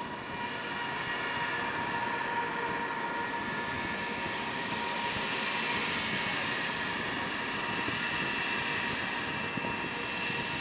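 Jet engines of an Ethiopian Airlines Airbus A350 running at low taxi power: a steady rush with a thin, constant high whine.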